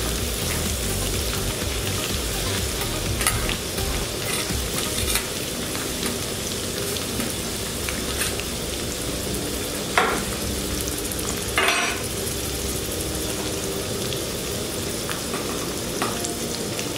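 Sliced onions and green chillies frying in hot oil in a metal kadai, a steady sizzle. A few brief louder noises come about three, ten and twelve seconds in.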